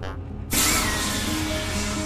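Pneumatic hiss of the habitat's vacuum waste system being triggered, starting abruptly about half a second in and slowly fading. Soft background music plays underneath.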